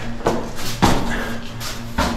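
Scuffs and knocks of a caver's boots and gear against the rock while climbing down a narrow cave passage: a few sharp knocks, the loudest about a second in.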